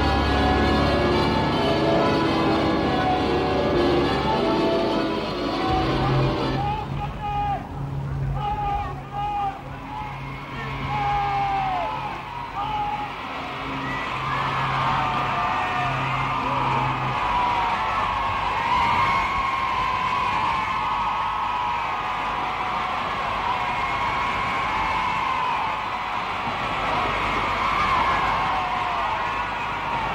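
Sustained music chords for the first few seconds, then a large crowd cheering and calling out, which builds into dense, continuous cheering.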